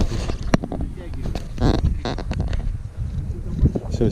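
Wind buffeting the microphone on an open boat at sea, a steady low rumble, with a sharp click about half a second in and brief murmured voices.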